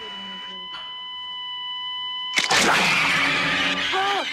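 A steady, high electronic tone, as from an operating-room monitor, holds for about two and a half seconds, then cuts off. A man suddenly screams loudly, waking from a nightmare.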